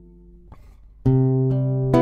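Acoustic guitar playing between sung lines: a held chord fades out, then a loud strummed chord sounds about a second in and is struck again near the end.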